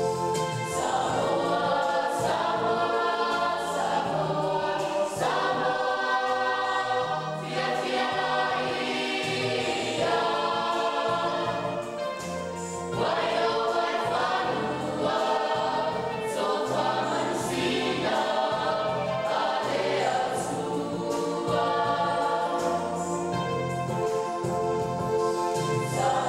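A choir of many voices singing a church song in harmony, with held low bass notes underneath that change every second or so.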